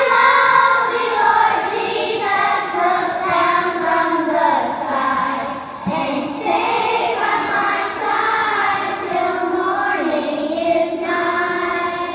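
A children's choir singing together in phrases, with a short breath about halfway through.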